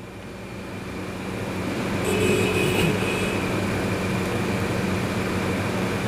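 A steady mechanical rushing noise with a low hum underneath, swelling over the first two seconds and then holding level.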